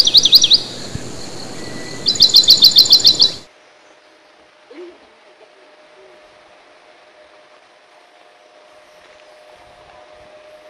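A bird calling in two quick runs of repeated falling whistled notes, several a second, the second run about two seconds in. The bird call and its background noise stop abruptly a little over three seconds in, leaving only faint ambient sound with a thin steady hum.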